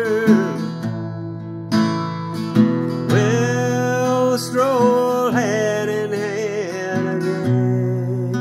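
Acoustic guitar strummed in a slow country ballad, with a man's voice holding long wordless notes with vibrato over the chords.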